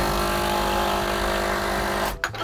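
Espresso machine steam wand opened briefly: a loud, steady hiss of steam with a steady tone under it, starting and cutting off suddenly.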